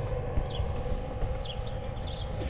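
A bird giving short, repeated falling chirps, a few to the second, over a steady hum and low rumble.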